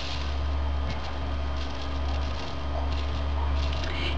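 Coarse glitter sprinkled by hand onto a glue-coated cardboard carton box and a plastic tray, faint and light, over a steady low background hum.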